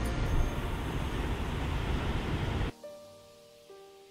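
Wind buffeting the microphone over the wash of breaking surf, with faint music underneath. About two and a half seconds in it cuts off suddenly, leaving soft piano notes.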